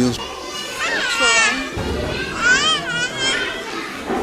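A child's high-pitched voice calling out twice, each call wavering up and down in pitch.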